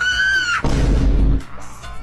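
A short high, slightly bending tone, then a loud, heavy low boom lasting most of a second: an edited-in comic sound effect.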